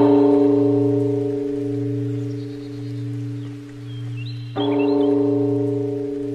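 A large temple bell struck twice: once at the start and again about four and a half seconds in. Each strike gives a deep ringing tone that pulses slowly as it fades.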